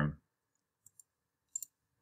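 A few faint computer mouse clicks: two about a second in, then two more in quick succession a little later.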